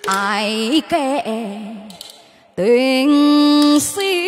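A woman singing a wordless, ornamented vocal line into a microphone, with strong vibrato: a wavering phrase at the start that fades, then a rising glide into a long held note in the second half.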